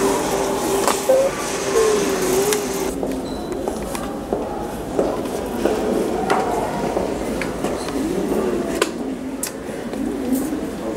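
Indistinct background voices and room murmur, with a few light clicks and taps.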